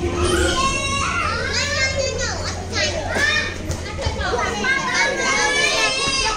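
Young children playing: high-pitched voices chattering and calling out, with a few rising and falling squeals. A low steady hum runs underneath and stops about four seconds in.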